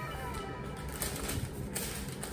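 Faint rustling and light clicks of a cardboard box and its paper packing being opened by hand. Over the first half second this sits under the fading tail of an edited-in celebration sound effect with falling tones.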